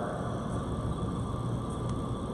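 Steady low background noise of a large hall, with one faint click near the end.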